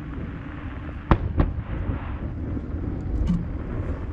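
Two sharp firework bangs about a third of a second apart, a little over a second in, over steady low background rumble.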